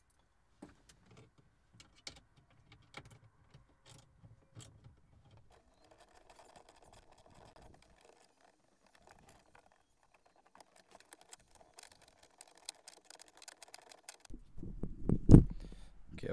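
Faint clicking of an 8 mm socket tool undoing the screws of the start-button assembly behind the dashboard, turning into a quicker run of fine ticks later on. A loud bump sounds near the end.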